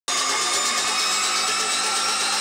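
A steady, harsh electronic noise drone with a few held high tones, cutting in abruptly: the opening sound effect of an electronic music intro.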